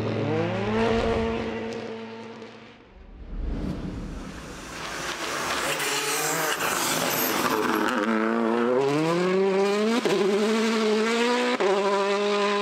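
Rally car engine revving hard and pulling through the gears, its pitch climbing with each run and dropping sharply at a gear change near the end, with a rushing noise stretch in the middle.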